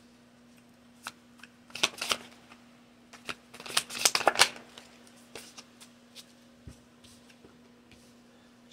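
A deck of tarot cards being shuffled by hand: two bursts of rapid card clicking and rustling, about two and four seconds in, with scattered single card taps between them.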